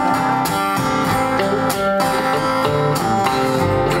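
Live acoustic and electric guitars playing together in a short instrumental gap between sung lines, the acoustic guitar strummed.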